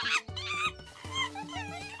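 Cartoon monkeys' high chattering calls over background music with a steady bass beat. A loud burst of calls comes at the start, then a wavering call follows in the second half.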